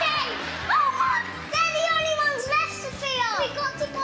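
Young girls' high-pitched excited voices, squealing and calling out, with pitch swooping up and falling sharply near the end, over background music.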